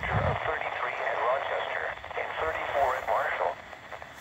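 NOAA Weather Radio broadcast on 162.550 MHz, a synthesized voice reading the weather forecast, heard through a Midland weather radio's small speaker. The voice is thin and narrow-band over a faint hiss.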